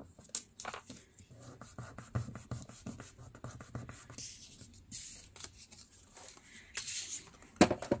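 Washi tape and a strip of book-page paper being handled and pressed down by hand: soft rustles and small crackles, with two longer rasps, one about five seconds in and one near the end.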